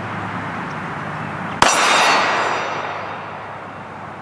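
A single 9mm shot from a Glock 19X pistol about a second and a half in, followed by the clang of the steel target and a ring that dies away over about a second and a half.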